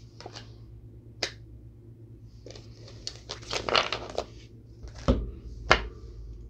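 Playing cards being handled: a click about a second in, a rustle of cards sliding from about three to four seconds, and two sharp knocks near the end as a card is laid down on the board, over a faint steady hum.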